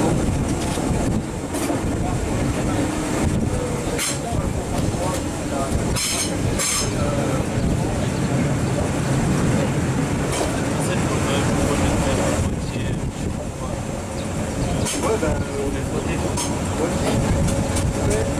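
Historic LEB Are 4/4 25 electric railcar running along the line, heard from inside through an open window: a steady rolling rumble with sharp clicks from the wheels on the track every few seconds.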